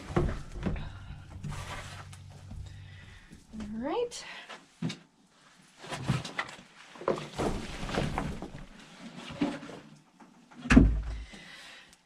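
Hands working moist compost and worms in a plastic half-barrel bin, with soft rustling and handling noises. There is a short rising pitched sound about four seconds in and a heavy thump near the end.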